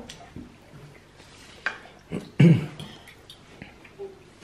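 Quiet dinner-table sounds with a few light clicks, and one short, loud burst of a person's voice a little past halfway, without words.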